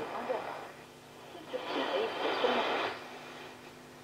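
Shortwave AM reception from a homebrew octal-valve superhet receiver as it is tuned across the 31-metre broadcast band: hiss and static with faint snatches of a station's voice. The sound swells about a second and a half in and fades near the three-second mark.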